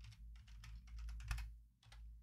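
Faint, quick key presses on a computer keyboard while a file name is typed.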